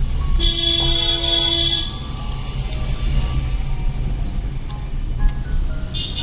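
A vehicle horn sounds once, a steady blast of about a second and a half, near the start. Underneath is the low rumble of a vehicle driving, with music playing throughout.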